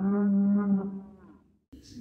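A bull mooing: one long, steady moo that falls away and fades out about a second and a half in.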